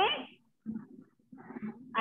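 A woman's voice ending on one short syllable that rises sharply in pitch, like a questioning "okay?", followed by faint, broken low sounds.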